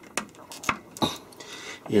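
A few light clicks and knocks in the first second or so, the handling sounds of a power cord's plug being pushed into a RigRunner 12-volt DC power distribution panel.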